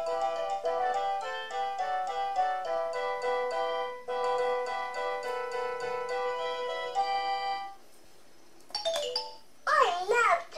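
A VTech Shake & Sing Elephant Rattle playing a cheerful electronic chime melody through its small speaker, which stops about three-quarters of the way through. Near the end, the toy's recorded voice starts a sing-song phrase.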